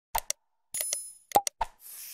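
Animated subscribe-button sound effects: a few short clicks and pops, a bell ding about three-quarters of a second in, more clicks, and a swish starting near the end.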